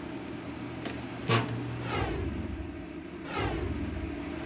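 A single sharp click about a second in as the coil's lead is plugged into the power supply, over a low steady hum, with a short hiss near the end.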